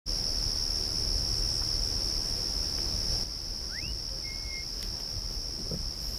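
Night chorus of crickets, a steady high-pitched trill. Under it a low rumble drops away about three seconds in, and just after that a short rising note is followed by a brief level one.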